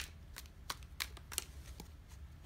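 Tarot cards being shuffled by hand, a run of short crisp clicks and flicks, about three a second.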